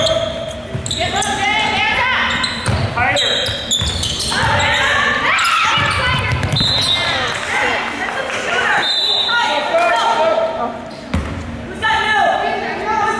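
A basketball bouncing on a hardwood gym floor, with voices calling out over it, echoing in a large gym.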